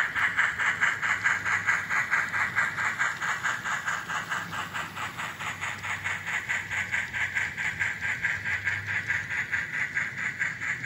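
N-scale Union Pacific Challenger steam locomotive model chuffing in an even, hissy rhythm of about five beats a second, with a low hum underneath.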